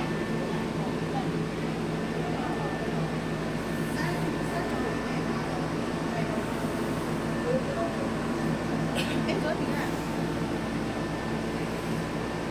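A steady machine hum with several held tones, with indistinct voices in the background.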